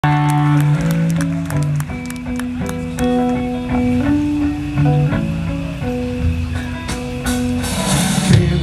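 Live rock band playing an instrumental intro: electric guitar, bass guitar and drum kit, with the guitar notes changing every half-second or so over a steady ticking of cymbals.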